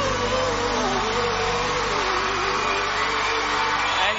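A man singing one long held note that drifts down and wavers, fading about three and a half seconds in, over a live band's backing.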